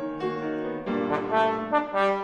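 Tenor trombone coming in about halfway through over sustained piano, playing a quick series of short, bright notes that are louder than the piano.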